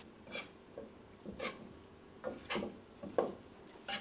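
A metal ladle scraping and knocking against a wok while stir-frying, about five separate strokes spread through the few seconds.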